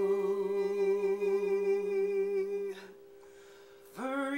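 Two male voices hold a long closing note in harmony, hummed, with a slight waver in the lower voice. The note stops just under three seconds in.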